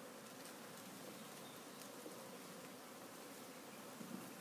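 Honeybees buzzing: a faint, steady hum from a colony exposed under the deck boards.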